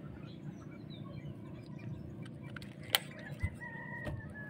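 Faint distant bird calls over a quiet outdoor background, with one drawn-out call near the end. A single sharp click comes about three seconds in.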